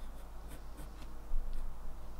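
Pencil scratching over watercolour paper in short sketching strokes, a little louder about one and a half seconds in.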